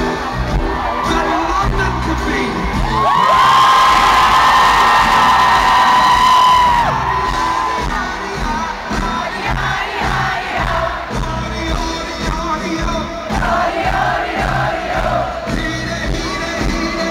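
Live band music with a large arena crowd singing along and cheering. A long held sung note from about three to seven seconds in is the loudest part.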